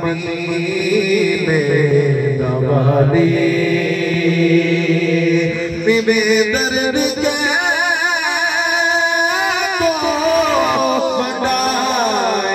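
A man singing a naat solo into a microphone, drawing out long held notes with wavering ornaments on them.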